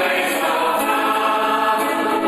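Mixed amateur choir of men and women singing in sustained harmony, a Dutch song arranged as swinging reggae. Recorded on a mobile phone, with poor sound.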